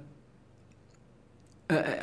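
A man's voice trailing off, then a pause of near silence with a few faint clicks, and the voice starting again near the end.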